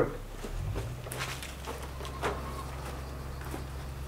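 Faint footsteps and a few light scuffs and rustles in dry grass and weeds, over a steady low hum.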